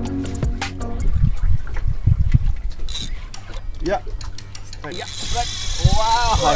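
Music in the first second, then low thumps. About five seconds in, a fishing reel's drag starts to scream with a loud, steady, high hiss as a hooked fish takes line on the strike.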